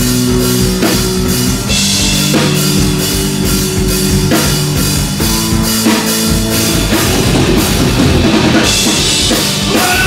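Heavy band playing live: distorted guitar and bass chords over a rock drum kit, loud and dense. There are cymbal crashes about two seconds in and again near the end.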